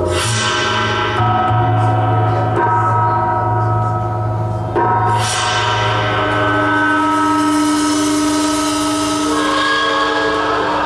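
Live band music: the slow, ambient opening of a progressive rock piece on Chapman Stick, touch guitar and drums. Layered, sustained chords ring over a low drone, with a struck, ringing accent at the start and another about five seconds in.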